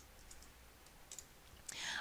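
A few faint, sharp clicks from a computer keyboard and mouse in a quiet room.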